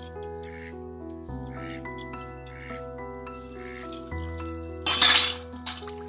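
Instrumental background music with slow, sustained chords. About five seconds in, a short, loud splash of water as chopped spinach is swirled and lifted in a metal basin of water.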